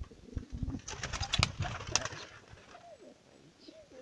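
Domestic pigeons cooing in a loft, with a short cluster of sharp clicks and rustles about a second in.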